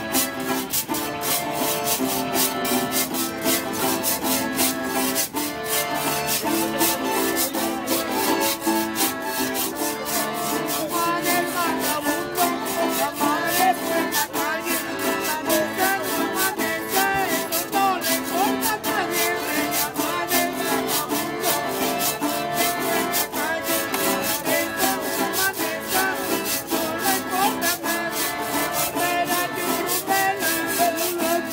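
A vallenato trio playing: an accordion carrying the melody over a strummed acoustic guitar, with a metal guacharaca scraped in a fast, steady rhythm.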